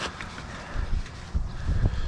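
Wind rumbling on the microphone, with a few faint clicks from the oil dipstick cap being turned into the filler neck.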